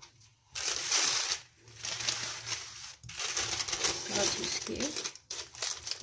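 Butter paper crinkling and rustling as hands fold and wrap it around a filled paratha roll. It starts about half a second in and goes on in crackly stretches, with short breaks.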